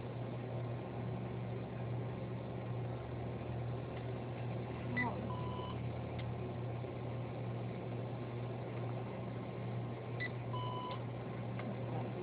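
Two short electronic beeps from a store checkout register, about five seconds apart, over a steady low hum.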